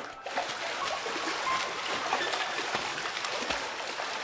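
Moving water, a steady splashing and trickling hiss with many small ticks throughout.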